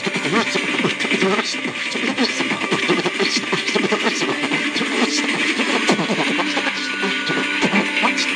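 Pop music playing from a radio, with a person beatboxing along: fast mouth-made percussive clicks and hits over the song.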